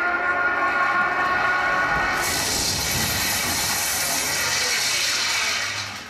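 A recorded stage sound effect: a steady whistle-like tone, then from about two seconds in a loud rushing hiss with a low rumble underneath, which fades out near the end.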